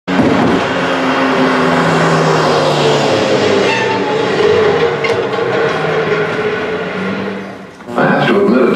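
A loud rumbling vehicle sound with long, sustained horn tones that shift in pitch, fading out near the end.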